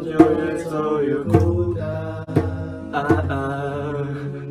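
Acoustic cover performance: a man sings long drawn-out notes over acoustic guitar, with sharp djembe strikes about once a second.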